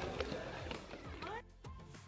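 Indistinct voices and background noise that cut off abruptly about one and a half seconds in, followed by soft background music with long held notes.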